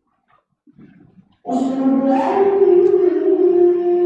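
A man's voice begins chanting the call to prayer (adhan) about a second and a half in: loud, long held notes that shift in pitch in slow steps.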